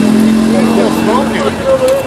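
An engine idling steadily as a low, even hum, with people's voices over it. The hum fades near the end.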